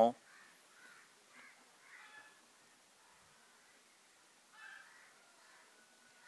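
A few faint bird calls during a quiet pause, the clearest one near the end.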